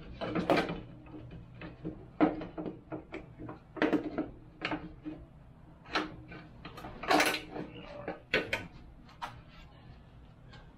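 A motorcycle's black plastic rear fender section being worked free and lifted off: irregular knocks, clicks and scrapes of the panel against the frame and wheel, the loudest about seven seconds in.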